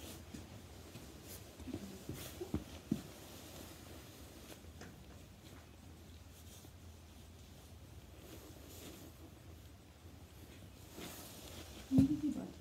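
Faint rustling with a few light clicks and knocks of nylon and leather harness being handled at the girth of a miniature horse's surcingle, over a steady low hum.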